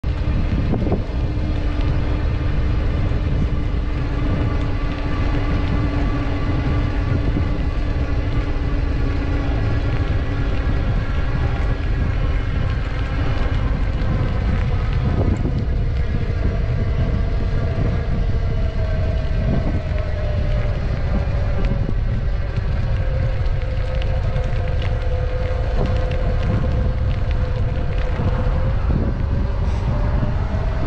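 Wind buffeting a handlebar-height action camera's microphone as a bicycle rolls along a paved path, a steady rumble, with a faint hum underneath that slowly drifts in pitch as the riding speed changes.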